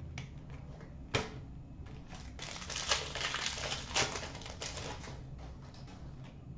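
Trading cards being handled at a counter: a sharp tap about a second in, then about two seconds of rustling and crinkling near the middle.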